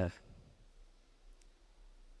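A man's voice through a microphone finishes a word right at the start, then a pause of near silence: quiet room tone with one faint click about midway.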